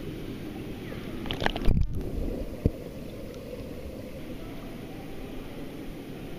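Pool water sloshing and lapping close to the microphone, with a louder splash about a second and a half in, then a steady rush of moving water.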